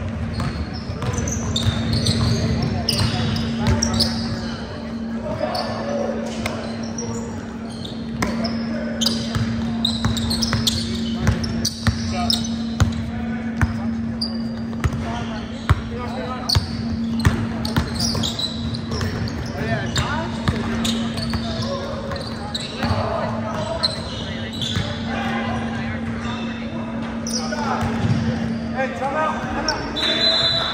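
A basketball dribbled on a hardwood gym floor in repeated sharp bounces, with sneakers squeaking on the court and players calling out, all ringing in a large hall. A steady low hum sits under it.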